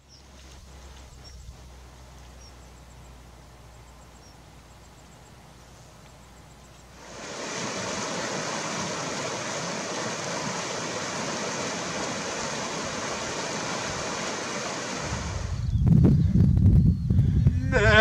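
Rushing stream water, a steady hiss that comes in about seven seconds in and stops about fifteen seconds in. Before it there is only a faint low hum with a few faint high chirps, and after it a louder, uneven low rumble near the end.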